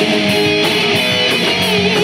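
Live rock band playing loud: electric guitars, bass guitar and drums, with cymbals struck in a steady beat.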